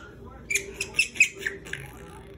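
A baby laughing in a quick run of about six short, high-pitched squeals.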